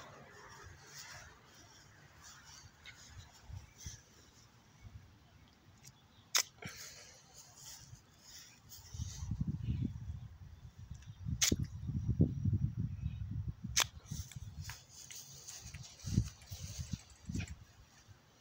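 Three sharp plastic clicks, a few seconds apart, as a toy plastic golf club strikes a golf ball on grass. A low rumbling noise runs through the middle, between the second and third click.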